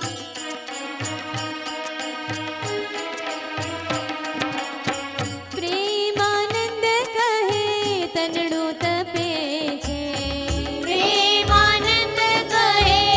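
Devotional bhajan music: an electronic keyboard holds sustained chords over a steady tabla rhythm. About halfway through, a woman's voice begins singing the melody. The deeper tabla strokes grow louder near the end.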